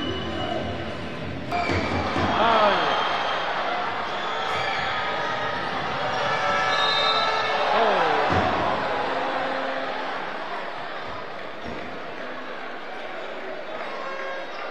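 Live arena sound of a basketball game: crowd noise and voices with court sounds of ball bounces and shoe squeaks. It is loudest about two seconds in and again about eight seconds in.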